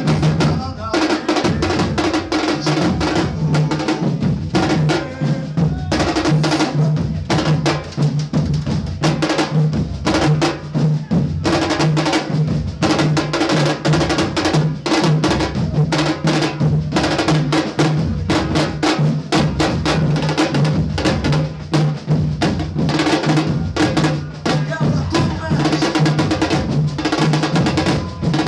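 Brazilian batucada drum group playing a fast, dense rhythm: deep surdo bass drums pound out a repeating pulse under a continuous stream of snare and other stick-struck drum hits.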